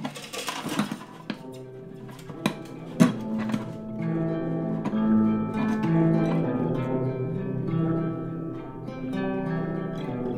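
A few seconds of light metallic clicks and knocks as a metal slinky is handled and fitted into a classical guitar's soundhole, then from about three seconds in, music of held plucked-string notes whose pitch changes every second or so.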